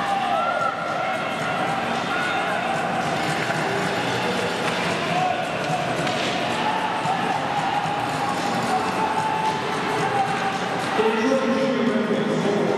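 Ice hockey game ambience: indistinct spectator chatter with occasional knocks of sticks and puck during play.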